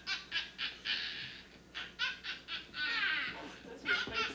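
Laughter: a run of short high-pitched giggles, with a brief pause and a longer laugh about three seconds in.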